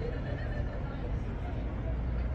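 City street ambience: a steady low traffic rumble with faint distant voices and a short pitched call right at the start.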